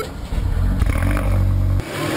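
Car engine running with a low rumble that stops abruptly shortly before the end.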